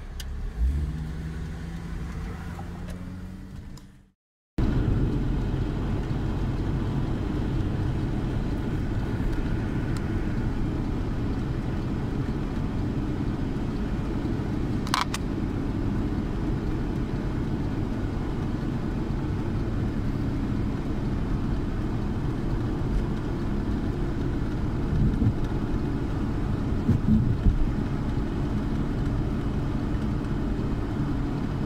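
Inside the cabin of a VW Winnebago Rialta motorhome: the engine note rises as it accelerates, then fades out about four seconds in. After a brief gap it gives way to steady engine and road noise at highway speed.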